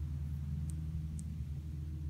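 A steady low hum, with two faint high ticks about half a second apart in the middle.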